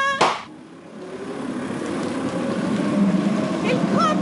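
A blown-up paper bag popped with a single sharp bang just after the start. Then steady city traffic noise, growing louder.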